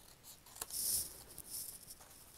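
Small photo print being handled and laid onto a paper journal page: a faint click, then a brief crisp papery brush about a second in.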